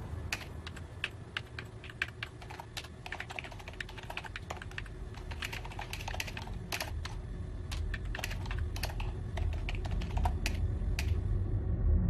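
Typing on a computer keyboard: a long run of irregular key clicks that stops about a second before the end. Under it a low rumble swells toward the end.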